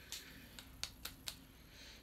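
Perfume spray bottle's pump pressed a few times onto a paper tester strip: faint, short spritzes in quick succession.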